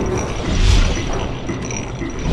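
Logo-intro sound effects of turning machinery: mechanical gear clanking and creaking, with a deep boom swelling about half a second in over a thin, steady high tone.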